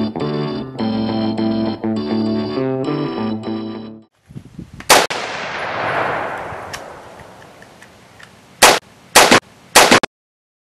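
Distorted electric-guitar music for about four seconds, cutting off abruptly. Then outdoor gunfire: one very loud shot or blast with a long rumbling tail that fades over a few seconds, followed near the end by three quick, loud shots.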